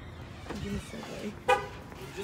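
A single short car horn beep about one and a half seconds in, like a car chirping as it is locked, after some low voices.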